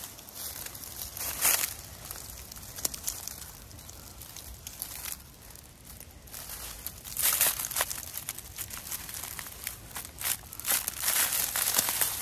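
Dry fallen leaves and grass rustling and crackling in irregular bursts as a cat moves about in the leaf litter and is stroked, loudest about a second and a half in and again through the second half.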